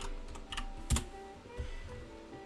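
A few irregular clicks of typing on a computer keyboard, the loudest about a second in, over faint background music.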